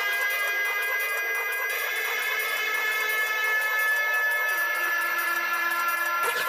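Held electronic synthesizer tones with no drums or bass: a breakdown in a neurofunk drum and bass track. The chord shifts slightly a couple of times.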